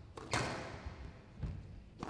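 Squash rally: a squash ball being struck by rackets and hitting the court walls. It makes sharp cracks, two main hits about a second apart, each ringing on in the hall.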